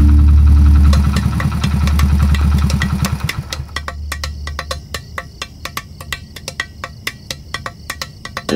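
Motor scooter engine running with a low pulsing hum that drops away about three and a half seconds in, leaving a quicker, quieter even ticking.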